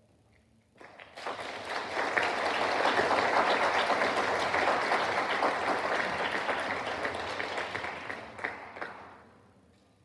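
Audience applauding: the clapping breaks out about a second in, swells to a dense sound of many hands, holds, and dies away just before the end.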